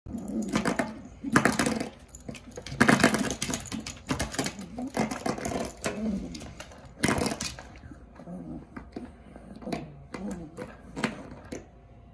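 A puppy playing with a door stopper: rapid rattling and clicking in uneven bursts, busiest in the first half and sparser toward the end.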